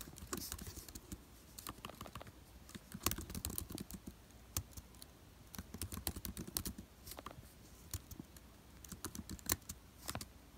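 Typing on a laptop keyboard: quick runs of key clicks in irregular bursts, with short pauses between them.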